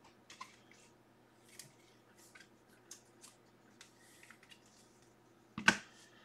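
Trading cards being handled by hand: a string of soft, brief rustles and slides of card stock and sleeves, with one louder tap near the end.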